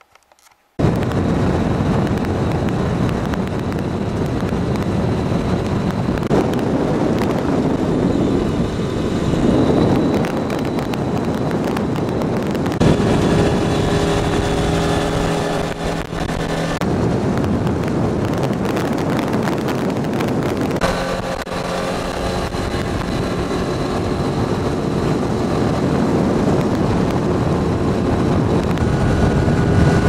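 Motor vehicle driving on a gravel road, with steady engine and tyre noise that cuts in sharply about a second in. An engine tone stands out for a few seconds around the middle.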